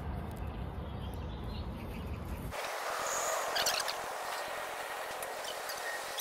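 Outdoor background noise with a low rumble, which changes abruptly about two and a half seconds in to a thinner steady hiss. A short high bird chirp sounds around the middle, followed by a few faint clicks.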